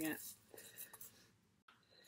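Dried herbs crumbled and rubbed between the hands in a bowl: a faint, dry rustle with small crackles that fades out about a second in.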